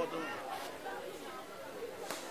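Indistinct chatter of several people talking in the background, no words clear.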